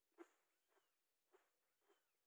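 Faint footsteps of a person walking through fresh snow, four even steps about two a second.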